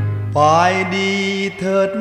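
Male vocalist singing a Thai luk thung song in Thai over band accompaniment. The voice comes in about a third of a second in and slides up into a long held note.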